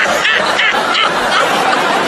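Sitcom studio audience laughing, many voices overlapping in a steady wash of laughter.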